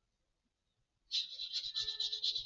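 A tissue rubbed rapidly back and forth against the surface of an inkjet photo print, a hissy scrubbing that starts about a second in.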